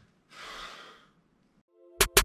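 A short, faint breath out from a man, lasting well under a second, then near silence.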